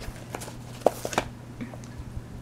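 A handful of light, sharp clicks and taps as the cardboard inserts and trays of an AirTag four-pack box are handled and set back into the box.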